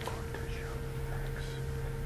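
Two men whispering to each other over a steady low room hum.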